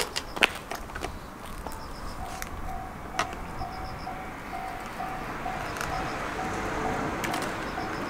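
A railway level crossing alarm ringing a repeating electronic ding about twice a second, starting about two seconds in, with a few sharp clicks and knocks from a road bike being handled.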